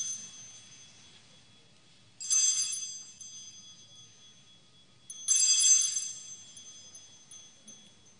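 Altar bells rung three times, about three seconds apart, each ring bright and fading away, marking the elevation of the consecrated host at Mass.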